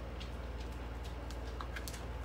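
Light, scattered clicks and ticks of hands handling ribbon while making a bow, over a steady low hum.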